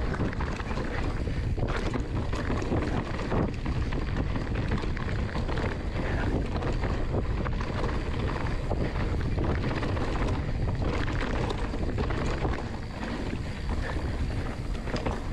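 Wind rushing over the camera microphone and the mountain bike's knobby tyres rolling fast over a dirt trail, with frequent small clicks and rattles from the bike.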